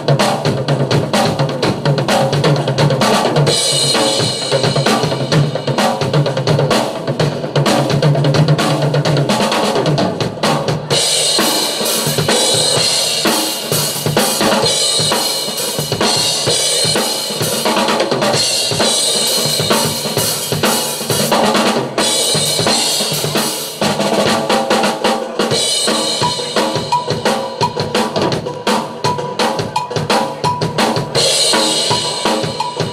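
Rock drum kit solo played live through a PA: fast, dense strokes on bass drum, snare and toms, with cymbals washing in and out in stretches of a few seconds from about a third of the way in.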